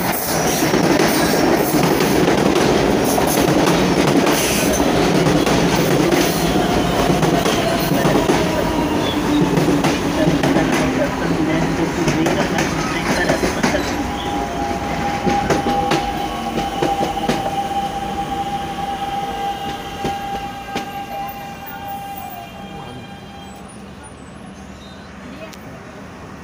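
Electric commuter trains at a platform. First one runs through at speed with rumbling and wheel clatter. About halfway through a second electric train is braking into the station, with a steady high squeal and fainter falling whines, and it fades as the train comes to a stop.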